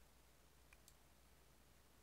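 Near silence: room tone with a low hum, and two faint computer-mouse clicks in quick succession about three-quarters of a second in.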